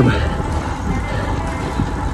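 Steady wind and road noise on the microphone while a road bike is ridden uphill.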